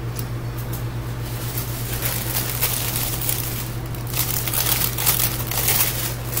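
Crinkling and rustling of crinkly wrapping material being handled, in irregular bursts that thicken about two seconds in, over a steady low hum.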